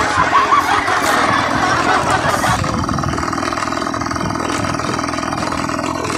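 Motorcycle engine running at a steady pace while riding on a gravel dirt track, settling into an even, steady hum about two and a half seconds in.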